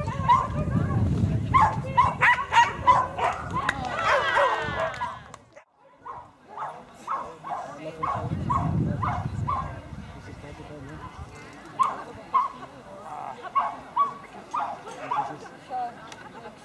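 A dog barking rapidly and repeatedly, two to three barks a second, the excited barking of a dog running an agility course; it breaks off briefly about six seconds in, then goes on.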